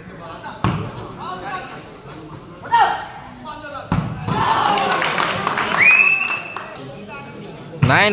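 A volleyball is struck by hand with sharp slaps, once about half a second in and again at about four seconds, while spectators shout. A burst of loud crowd yelling and cheering follows the second hit, with one long rising shout in it.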